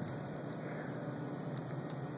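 Steady low hum and hiss of outdoor background noise, with no distinct event.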